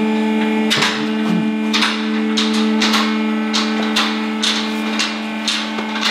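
Two-post vehicle lift raising a pickup: its electric hydraulic pump motor hums steadily, and from about a second in the safety locks click over roughly twice a second as the arms climb.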